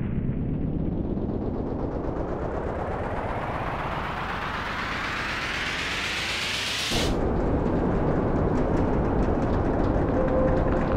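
Experimental noise music: a dense, rapidly rattling noise rises steadily in pitch for about seven seconds. It then breaks off suddenly into a lower, rough noise texture, with a faint steady tone coming in near the end.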